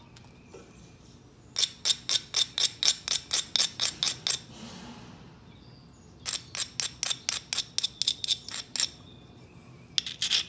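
A dark abrading stone rubbed in quick back-and-forth strokes along the edge of a small stone preform, a gritty scratch about five times a second. It comes in two runs of roughly three seconds each, with a short pause between.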